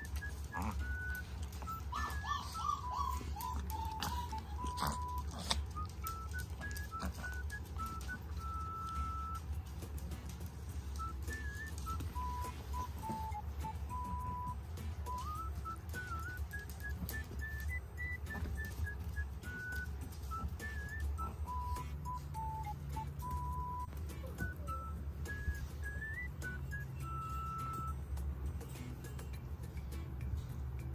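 Background music: a simple tune carried by a single whistle-like melody line that steps up and down in pitch, over a steady low hum. There are a few faint clicks in the first few seconds.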